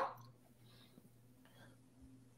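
A woman's reading voice trails off at the start. A pause follows, with a faint breath over a low, steady hum of the microphone line and one tiny click.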